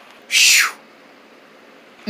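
A person's voice making one short, high, breathy cry that slides down in pitch, about half a second long, then quiet room tone.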